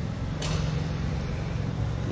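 Motorcycle engine running at a steady pitch as it approaches. There is a brief scrape of noise about half a second in.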